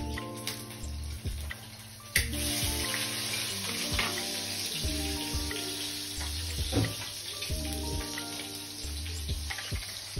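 Background music with held chords and a regular bass beat. About two seconds in, a steady hiss starts under it.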